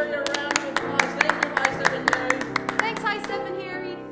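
Several people clapping their hands in an uneven patter for about three seconds over grand piano music, the claps stopping shortly before the end.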